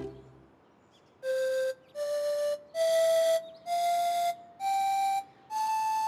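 Pan flute playing a rising scale: starting about a second in, six separate held notes of about half a second each, every note a step higher than the one before.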